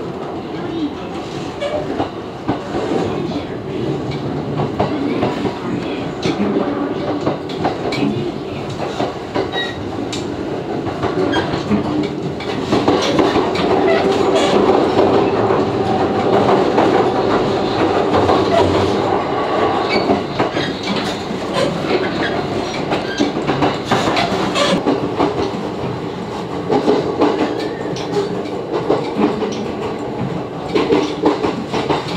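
Running noise heard inside a JR West 227 series electric train: a steady rumble with wheels clicking over the rail joints. It grows louder for several seconds in the middle.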